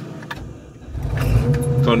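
Claas Dominator combine harvester heard from inside the cab, a deep rumble building about half a second in and settling into a loud, steady machine sound with a steady whine added near the end. This is the machine being run up to try to turn a threshing drum choked with straw at the concave.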